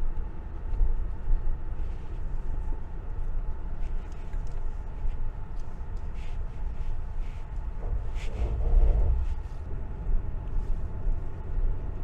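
Car's engine and tyre noise heard inside the cabin while driving a rough, patched road: a steady low rumble with a few light rattles, swelling louder about eight seconds in.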